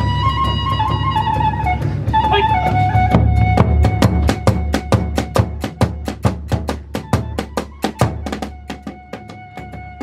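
Hiroshima kagura accompaniment: a bamboo transverse flute holds and steps down its melody over the large taiko drum. A quick, even run of drum and hand-cymbal strokes, about four or five a second, fills the middle and thins out near the end.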